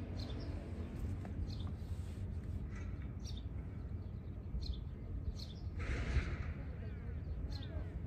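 Small birds chirping on and off in short high calls over a steady low rumble of outdoor background noise, with a brief hiss about three-quarters of the way through.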